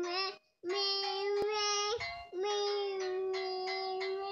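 A simple children's tune sung in long, steady held notes, each about a second long, with short gaps between them. There is a sharp click about one and a half seconds in.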